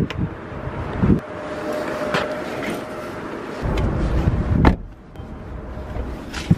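Rustling and handling noise as a person climbs into a sedan's driver's seat with a bag, then the car door shuts about three-quarters of the way through. After that the outside noise drops away.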